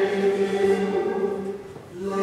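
Liturgical chant sung by a woman priest in long held notes, part of the sung Eucharistic prayer. The chant fades into a short breath pause near the end.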